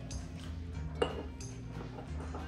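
Background music, with a few light clicks and clinks of a metal garlic press working over a glass jar, the sharpest about a second in.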